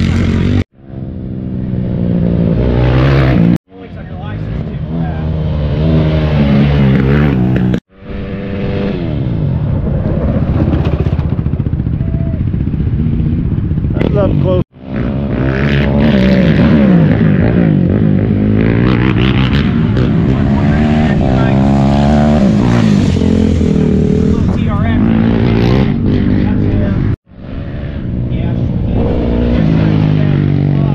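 Racing ATV engines revving hard, their pitch rising and falling as they accelerate and shift. The sound breaks off suddenly about five times and fades back in each time.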